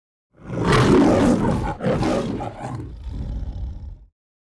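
The MGM logo's lion roar. A loud roar starts about half a second in, a second roar follows after a brief break near the two-second mark, and a lower growl trails off and cuts out near the end.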